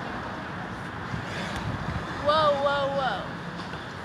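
A 10-inch quadcopter flying, its motors and propellers making a steady buzzing hum, with a short voice-like sound a little past halfway.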